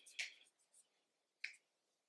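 Near silence broken by two faint, short clicks about a second and a half apart, from small makeup items being handled.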